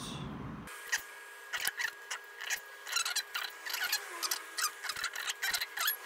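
Close-up handling noise of fingers rubbing together and clicking against a small plastic blood ketone meter and its test strip: scratchy rubbing with many sharp little clicks, over a faint steady high tone.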